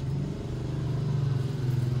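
An engine running steadily at a low, even pitch.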